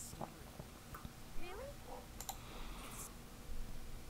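Quiet room with a few soft computer-mouse clicks and a faint, low voice in the background.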